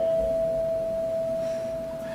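A single steady, pure tone held like a sustained note, with a fainter tone just beneath it, slowly fading.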